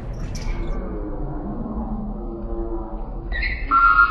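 Basketball game echoing in a gymnasium: a low rumble of play with faint voices. Near the end comes a short, loud, high-pitched squeal.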